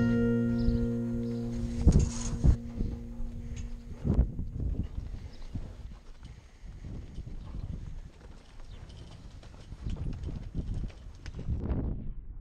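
A song's last chord rings and fades out over the first four seconds, with a couple of knocks under it. Then heifers shuffle and trot across a dirt pen, their hooves making an uneven run of dull thuds.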